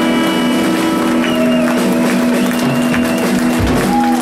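Live rock band with electric guitars and bass holding a long sustained chord as the song winds down, with a few low drum hits near the end. Audience applause begins over it.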